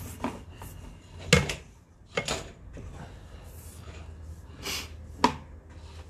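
Sewer-inspection camera push cable being fed into a pipe cleanout by hand: a few scattered knocks and clatters with rubbing in between, loudest about a second and a half in and again near the end, over a low steady hum.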